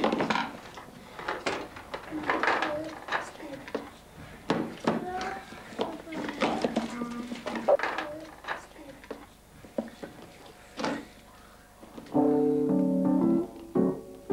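Wooden spoon knocking and scraping in a mixing bowl as a child stirs, a string of irregular clunks, with brief child voices between them. Music starts near the end.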